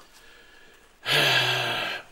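A man's voice: a loud, breathy drawn-out exclamation lasting about a second, starting about halfway in after a quiet first half.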